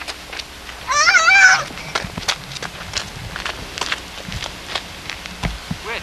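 A child's short, high-pitched, wavering squeal about a second in, followed by scattered clicks and rustles of the camcorder being handled.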